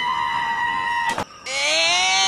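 A high-pitched scream held and cut off abruptly about a second in. After a brief gap, a second scream begins and rises in pitch.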